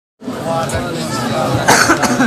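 A single loud cough near the end, over people talking.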